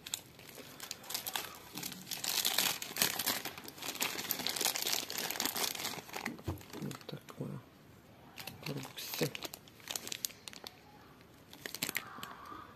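Plastic wrapping of a soap multipack crinkling as it is handled, in dense irregular rustles for several seconds, then in shorter, quieter bursts.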